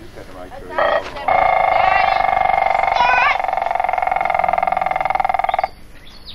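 A small brass horn blown in one long held note of about four seconds, starting about a second in and cutting off near the end, with voices over it.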